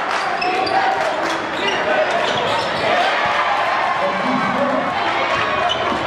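A basketball dribbled on a gym's hardwood floor during live play, under the steady noise of a crowd of voices filling the hall.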